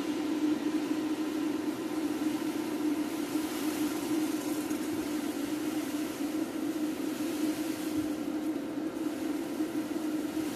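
Electric fan running with a steady hum, under a soft hiss as caustic soda is poured into a tray of hot water and dissolves.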